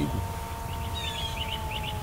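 Songbirds chirping outdoors: a quick run of short high chirps, several a second, with a falling whistled note about a second in.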